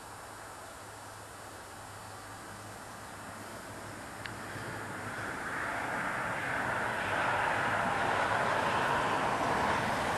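A small electric RC plane's motor and propeller, heard as a rushing noise without a clear whine that grows steadily louder over the second half. There is a brief click about four seconds in.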